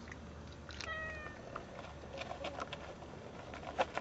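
A kitten gives one short meow about a second in, amid small clicks and smacks of cats eating from a plate of food, with one sharper click near the end.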